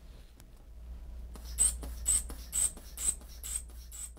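Blood pressure cuff being pumped up with a hand bulb: a short squeaky puff of air at each squeeze, about twice a second, starting about one and a half seconds in.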